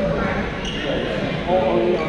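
Voices of players and onlookers echoing in a large gym hall, with a single sharp tap about two-thirds of a second in and a louder voice near the end.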